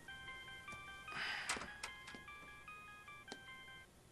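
Mobile phone ringing: a polyphonic ringtone melody of short electronic notes that stops just before the end. A short noisy burst about a second in is the loudest sound.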